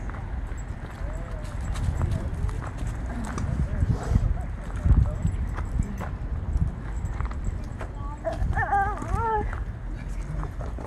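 Footsteps on a dirt trail strewn with twigs and dry leaves, a series of uneven knocks and crunches. A young child's voice sounds briefly near the end.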